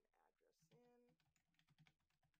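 Faint typing on a computer keyboard, with a quick run of keystrokes in the second half.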